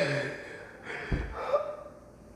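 Two men laughing in short bursts with breaths between them, loudest at the start and again about a second in.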